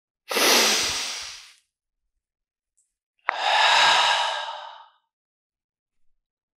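A man sighing heavily twice, each breath lasting over a second, the second about three seconds in: a sigh of relief.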